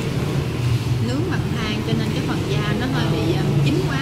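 Restaurant background: indistinct chatter of other people talking, over a steady low hum.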